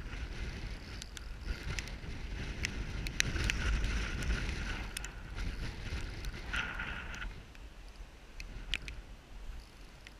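Spinning reel whirring with scattered clicks while a hooked pike is played on a bent rod; the whirring stops about seven seconds in. Wind rumbles on the microphone throughout.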